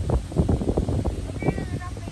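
Wind buffeting the microphone in uneven gusts, with a brief thin high-pitched call about one and a half seconds in.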